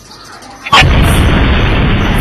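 A bomb explosion goes off suddenly about three-quarters of a second in, very loud, and runs on as a continuous heavy rumble.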